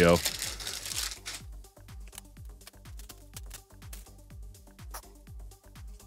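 Plastic shrink-wrap on a trading-card hanger box crinkling and tearing as it is pulled off, lasting about the first second and a half. Faint background music with a steady beat follows.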